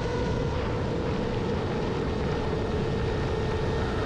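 A steady, even hum at one constant pitch over a low rumble, with no change in loudness.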